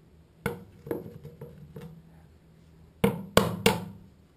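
A series of sharp knocks on a hard surface: a few lighter ones in the first two seconds, then three loud strikes in quick succession near the end, each with a short ring after it.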